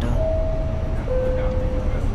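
Two-note electronic chime over the steady low rumble of a moving vehicle: a held higher tone for about a second, then a held lower tone for about a second.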